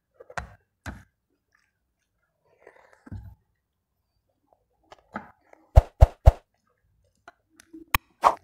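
Quiet mouth sounds of a person biting and chewing fried chicken off the bone. About six seconds in come three loud, sharp clicks in quick succession, and there is another click near the end.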